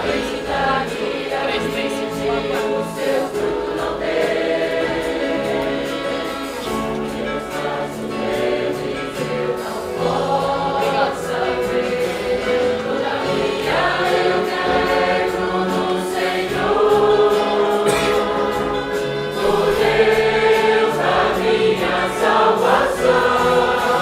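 Congregation singing a hymn together with a church orchestra of violins, saxophones and guitars, growing louder in the second half.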